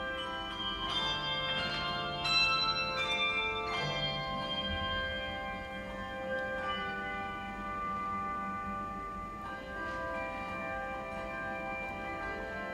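Handbell choir playing brass handbells: a run of quickly struck notes early on, then ringing chords held for a few seconds each, with new chords struck about six and a half and nine and a half seconds in.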